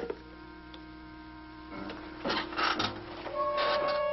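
Orchestral film score holding sustained tones, interrupted by a sharp click at the start and short rattling noises about two seconds in and again near the end.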